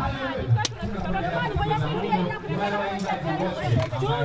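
Several people chatting at once, voices overlapping, with a single brief sharp knock just over half a second in.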